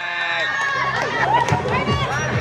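Several children's voices shouting and calling over one another during a football game, with a few sharp knocks among them.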